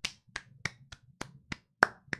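A run of about seven sharp hand claps, evenly spaced at roughly three a second.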